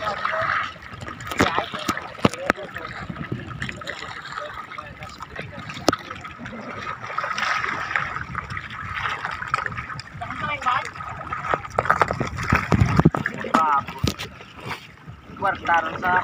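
Seawater splashing and trickling around a bamboo raft as a fishing net is worked over its edge, with scattered sharp knocks. Men talk in the background.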